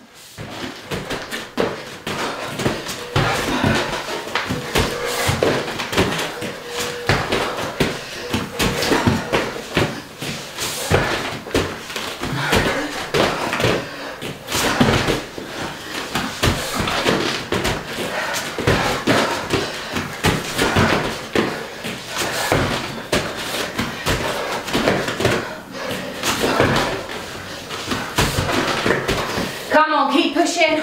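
Two people doing repeated burpees on a rubber floor mat: a continuous run of thuds and slaps as hands and feet land and jump back.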